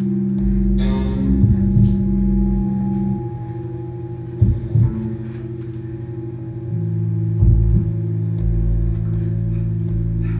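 Music of held low, gong-like tones, the bass note shifting about three seconds in and again near seven seconds, with a few short sharp knocks along the way.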